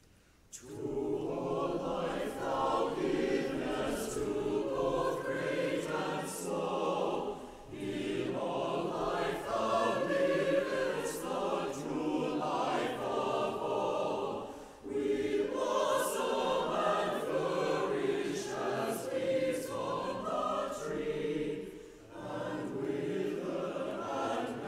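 Mixed church choir of men's and women's voices singing an anthem. It enters about half a second in and sings in long phrases, with brief breaks near 7, 15 and 22 seconds in.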